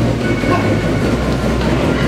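Slatted belt of an Assault Fitness curved manual treadmill rumbling and clattering steadily as a runner sprints on it.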